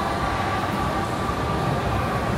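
Steady indoor shopping-mall ambience: a low rumble of building noise and distant shoppers, with a faint steady tone held throughout.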